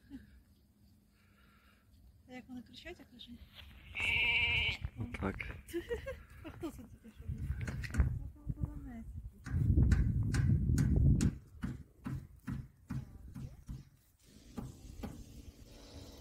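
A single short bleat from an animal about four seconds in, followed by scattered clicks and a low rumble a little after ten seconds.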